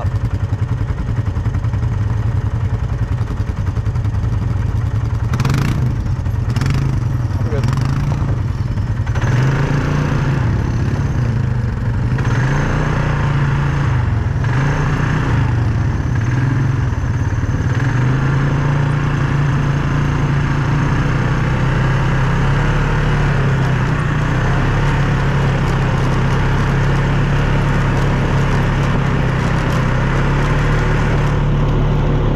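ATV engine running while being ridden on a dirt trail. Its pitch rises and falls with speed between about nine and eighteen seconds in, then holds steady.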